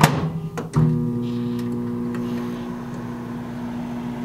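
Avanti compact microwave with mechanical dial controls: a few clicks and knocks as it is set, then from just under a second in it runs with a steady electrical hum while heating food.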